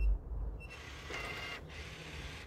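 Ultraloq U-Bolt Pro smart deadbolt unlocking after a fingerprint is read: a soft bump as the thumb presses the sensor, a short faint beep, then the lock's small motor whirring for about a second as it draws the bolt back.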